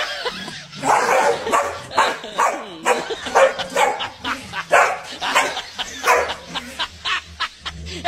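Dogs barking over and over in short, rapid barks, a few each second.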